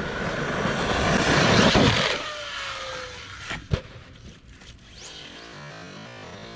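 Arrma Kraton RC truck driven hard on gravel: its brushless electric motor whines over a loud hiss of tyres spraying gravel, peaking in the first two seconds. Then a falling whine as it slows, and two sharp knocks about halfway in.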